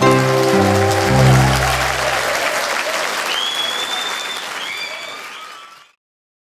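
A song ends on a few held low chords while an audience applauds. The applause runs on after the music stops, with a few high-pitched calls from the crowd, and fades away near the end.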